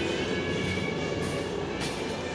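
Steady rumbling background noise with faint steady high tones running through it.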